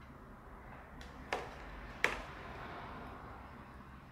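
Two light knocks, a little under a second apart, as kitchen containers (a glass bowl and a plastic tub) are moved and set down on a stone countertop, over quiet room tone.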